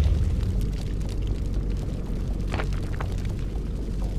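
Cinematic intro sound effect: the low rumble left after a deep boom, slowly fading, with a couple of short crackles about two and a half seconds in.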